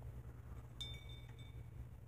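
A small hanging metal chime or ornament struck once by hand, giving a bright clink about a second in that rings for under a second, over a faint steady room hum.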